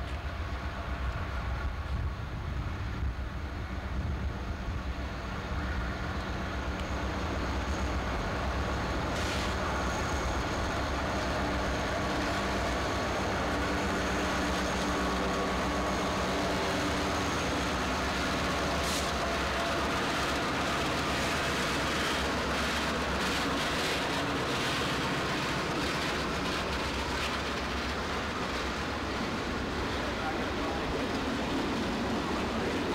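Freight train pulling out: diesel locomotives pass with a steady low engine drone and rumble. The string of freight cars follows, with the wheels clicking over rail joints in the second half.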